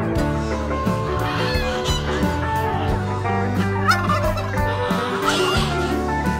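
Domestic turkeys gobbling a few times over guitar background music.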